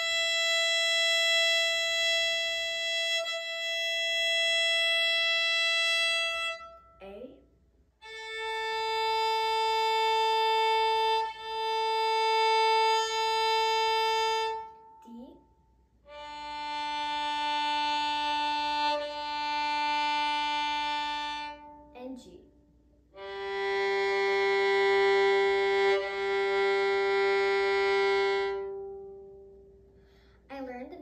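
A violin's four open strings bowed one at a time, E, A, D, then G, stepping down in pitch. Each note is held for about six seconds with one bow change partway through, and there are short pauses between the strings.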